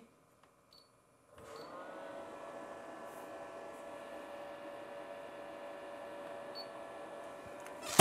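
Bench DC power supply humming with a faint whine as its output is turned up into a heavy load (two thin wires in parallel). The hum starts about a second and a half in, rises briefly in pitch, then holds steady.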